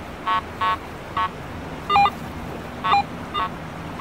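Garrett AT Pro metal detector sounding its target tone as the coil sweeps over a target: about six short beeps at uneven intervals, some stepping down in pitch partway through. This is a nice, repeatable signal from a non-ferrous target reading in the 70s on the target ID.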